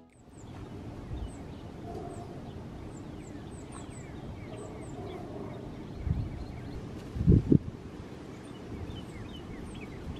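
Wild birds chirping and singing, many short high calls repeating over a steady background noise, with a few loud low thumps about six and seven seconds in.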